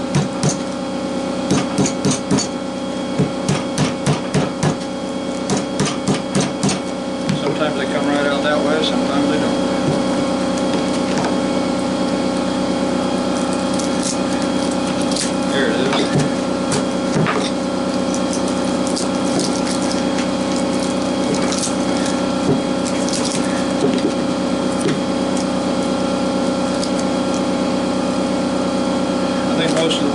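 Hammer blows on the steel stator of a small window AC fan motor, knocking the copper windings out, in quick bursts of several strikes over the first seven seconds. After that, a steady hum runs on with a few light clinks as the stator is handled.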